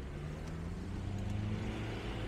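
A motor vehicle's engine accelerating on the street, its pitch rising and loudest about one and a half seconds in, over the steady noise of town traffic.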